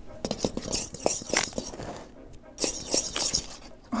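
A utensil rapidly clinking and scraping against a stainless steel mixing bowl as flour and salt are stirred together, with a short pause about halfway.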